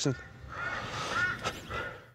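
A bird calling three times in the background, short arched calls about half a second apart.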